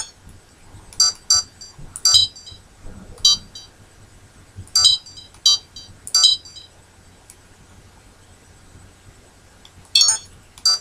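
Sony Cyber-shot digital camera giving short electronic beeps as its buttons are pressed, about nine high-pitched beeps, some in quick pairs, over the first six seconds or so.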